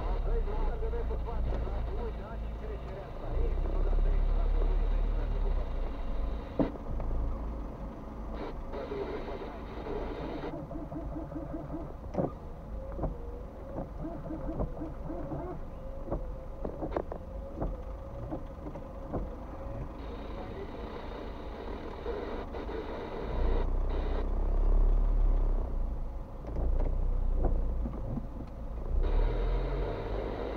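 Car cabin noise picked up by a dashcam: a low steady rumble from the car idling in stopped traffic, swelling twice.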